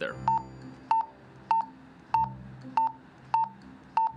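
Motorola RMU2080D two-way radio giving a short key beep with each press of its B button: seven evenly spaced beeps, about one every 0.6 s. Each beep steps the programmed frequency up by one value.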